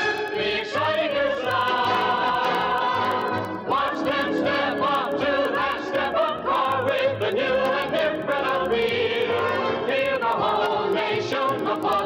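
Music: a choir singing a song about the Edsel over an instrumental backing with a steady bass pulse.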